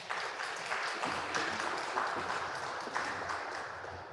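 Congregation applauding, many hands clapping, easing slightly near the end.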